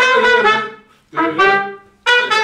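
Trumpet playing two held notes with a short break between them, the first dipping slightly in pitch before it fades.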